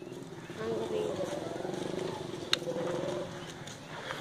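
Indistinct voices of people talking quietly in the background, with a single sharp click about two and a half seconds in.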